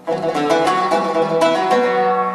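Solo oud improvising: a quick run of plucked notes breaks in sharply after a fading held note, the strings ringing on between strokes.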